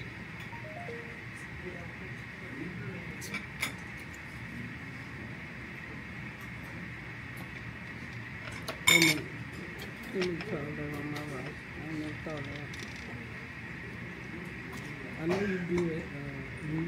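Metal cutlery clinking against a ceramic dinner plate as sauce is spooned onto chow mein and the noodles are forked, with a few separate clinks, the sharpest about nine seconds in. Faint voices are heard in the background over a steady high hum.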